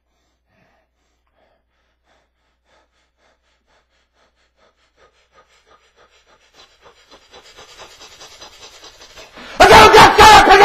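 A man breathing heavily through gritted teeth, building into quick panting breaths that grow steadily louder over the last few seconds as he works himself up. Just before the end it breaks into a loud shout.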